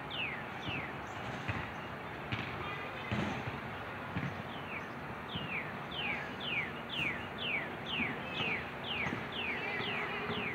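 A songbird singing a run of clear, downslurred whistles, about three a second: a few notes at the start, then after a pause a longer run from about halfway through.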